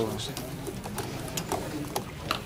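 Low, indistinct voices: a man's voice trailing off at the very start, then faint murmuring. There is no distinct non-speech sound.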